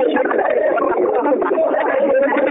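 Continuous talking or praying voices, narrow and muffled like a telephone line, with no pause.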